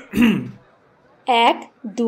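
A man clearing his throat once, a short rough rasp in the first half second. After a pause, a man's voice starts on short spoken syllables.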